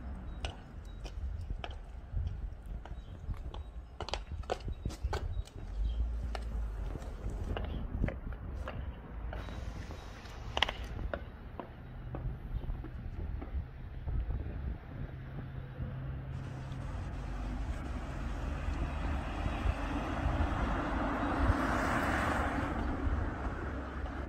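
High-heeled boots clicking on cobblestone pavement, about two steps a second, through the first ten seconds or so, over a low rumble. Near the end a broad rush of noise swells and fades.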